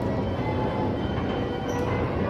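Antique 1908 Looff carousel running: a steady mechanical rumble from its turning platform and drive, with faint music underneath.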